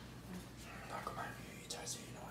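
Faint, indistinct speech, close to a whisper, over a low steady hum, with a few small clicks near the end.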